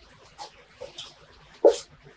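A dog's single brief whimper near the end, rising in pitch, over a few faint light ticks.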